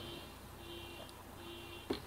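Faint electronic buzz pulsing on and off in an even rhythm, a little under once a second, with a couple of soft clicks, the sharpest near the end.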